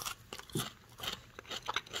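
A person chewing a bite of raw pumpkin: a run of short, irregular crisp crunches.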